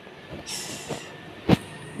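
Handling noise: a brief rustle about half a second in, then a single sharp knock about a second and a half in.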